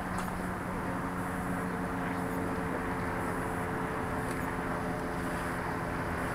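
A steady, low engine-like drone over outdoor background noise.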